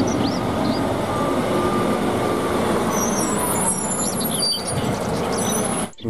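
Diesel engine of a MAN concrete mixer truck running steadily, then cutting off just before the end.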